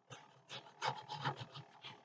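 Paper rustling and rubbing as fingers slide and press small paper pieces on a junk journal page: a quick string of about ten short, scratchy strokes.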